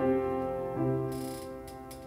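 Piano music: a chord struck at the start and another a little under a second in, each left to ring and fade. A brief hiss and a couple of soft clicks follow the second chord.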